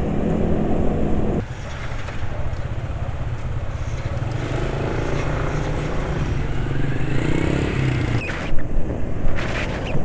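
The camera-carrying motorcycle's engine running on the move, with wind and road noise; the engine note climbs as the bike accelerates through the middle. A brief sharp clatter comes about eight and a half seconds in.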